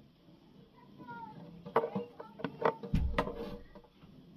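A utility knife cutting small pieces of printed card on a cutting mat: a run of sharp clicks and taps in the second half, with a low thump about three seconds in. A faint short pitched glide comes about a second in.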